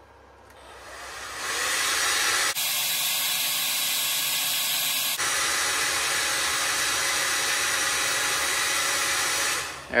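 Heat gun blowing hot air, a steady rushing hiss that builds over the first two seconds, changes tone briefly a few seconds in, and stops just before the end. It is heating a LiFePO4 battery's cell temperature sensors to trip the BMS high-temperature charge cutoff.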